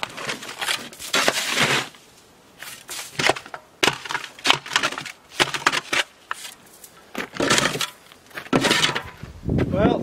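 A metal shovel blade scraping and chipping crusty ice off wooden deck boards. There is one long scrape at the start, then a run of shorter, irregular scraping strokes with brief pauses between them.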